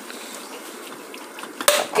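Meat and onions frying in a pot: a faint steady sizzle with a few light scrapes of a metal spoon against the pot. A sharp click near the end.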